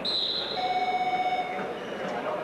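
A sudden shrill high tone, then an electronic buzzer sounding steadily for about a second, over the murmur of an arena crowd.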